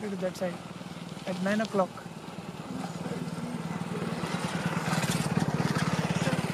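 A motorcycle engine running steadily, growing louder from about halfway through, after a couple of brief murmured words near the start.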